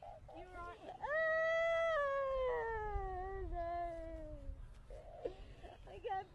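A woman's long, high wail of distress, starting about a second in, held briefly and then sliding down in pitch over about three seconds, with short cries just before it.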